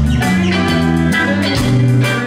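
Live reggae band playing an instrumental passage: electric guitar over a bass line and drums.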